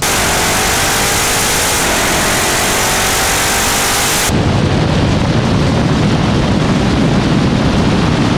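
Loud wind noise on the microphone of a camera mounted outside a car at speed, with a faint engine note rising in pitch underneath that falls back and climbs again about two seconds in. About four seconds in the sound switches abruptly to a deeper, rumbling wind buffet.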